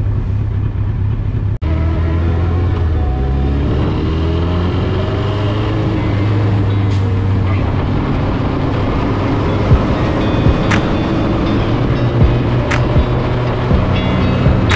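Suzuki Hayabusa's inline-four engine pulling away and accelerating, its pitch climbing steadily after a sudden break about a second and a half in, then running steadily at speed. A few short, sharp ticks come in the second half.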